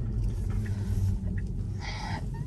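Steady low road and tyre rumble inside the cabin of a Tesla electric car on the move, with a brief higher-pitched sound near the end.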